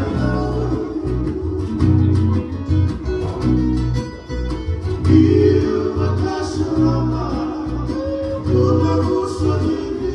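Fijian sigidrigi string-band music: two acoustic guitars and a ukulele strummed together, with men's voices singing over them.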